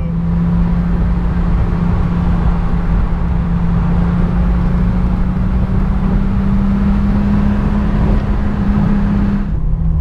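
Venturi 260 LM's turbocharged PRV V6 heard from inside the cabin while driving. The engine note climbs slowly and steadily under acceleration over road and wind noise, then drops suddenly near the end.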